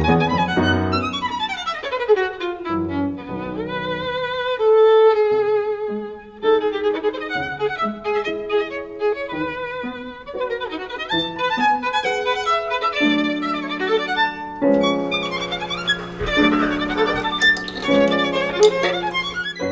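Violin playing a melody, with vibrato on the held notes. Lower sustained notes join under the melody near the end.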